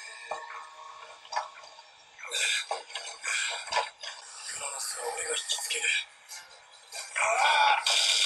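A TV episode's soundtrack playing with its bass cut away, so it sounds thin: voices and music in several bursts, with a few sharp hits, loudest near the end.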